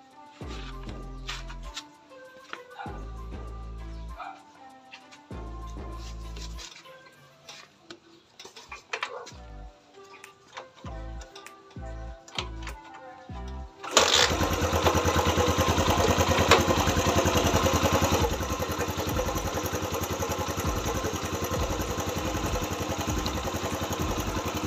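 Background music for roughly the first half, then an air-cooled single-cylinder motorcycle engine starts suddenly and runs, a little louder for the first few seconds before settling to a steady idle. The engine firing shows the plug is sparking through the newly fitted transparent spark plug cap.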